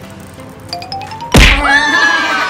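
Claw machine: a few light clicks and a short rising tone, then one loud thunk about a second and a half in, the loudest sound here. A high tone that slides slowly downward follows it.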